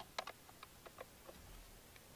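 Faint, irregular clicks and taps of a screwdriver working a Phillips screw in a plastic steering-column shroud, about half a dozen over two seconds, the sharpest right at the start.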